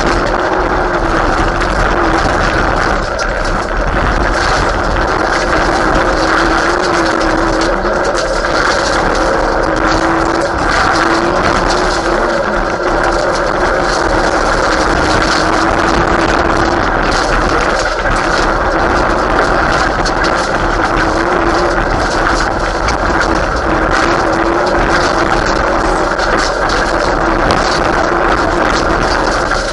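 Mitsubishi Lancer Evolution VII Group A rally car's turbocharged four-cylinder engine driven hard on a gravel stage, heard from inside the cabin, its pitch rising and falling with the throttle and gear changes. Gravel and small stones tick and rattle against the car throughout.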